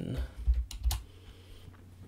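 Typing on a computer keyboard: a few keystrokes in the first second.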